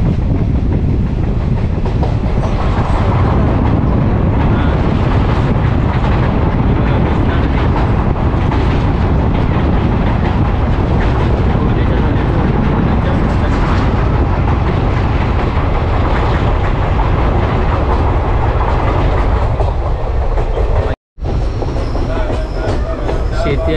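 Passenger train running at speed, heard from on board as it crosses a river bridge: a loud, steady rumble of wheels on the rails with faint clatter. The sound stops abruptly at an edit cut near the end.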